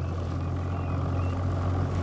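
Evinrude E-TEC 90 outboard motor idling with a steady low hum.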